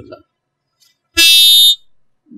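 A short, loud electronic buzz lasting about half a second, starting a little past a second in and cutting off abruptly.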